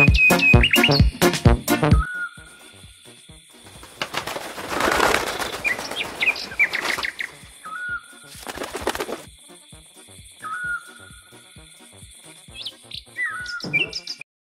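Cartoon bird sound effects: short chirping calls scattered throughout, and two stretches of wing flapping, a long one from about four to seven and a half seconds in and a shorter one around eight seconds. Music with a steady beat plays over the first two seconds, then stops.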